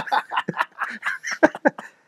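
Two men laughing in short bursts.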